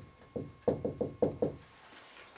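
Marker pen knocking and tapping against a whiteboard as a word is written in capital letters: a quick, uneven series of short knocks.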